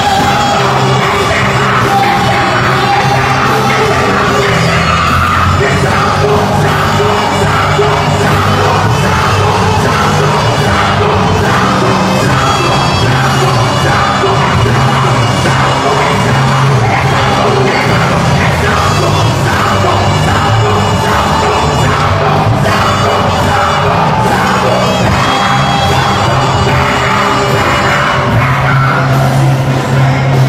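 Loud live gospel worship music: a band with drums and bass, a man singing into a microphone, and the congregation yelling and cheering along.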